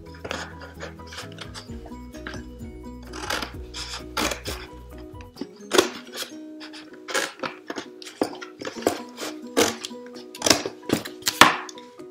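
Scissors cutting through a cardboard shoebox flap: a run of sharp snips and crunches, over background music whose bass drops out about five seconds in.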